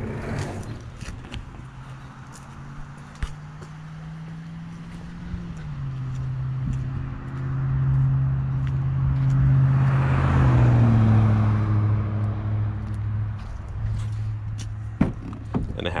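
A motor vehicle's engine running nearby, its low hum shifting in pitch and swelling to its loudest about ten seconds in before easing off, like a vehicle passing. Light clicks and handling sounds near the end as a truck door is opened.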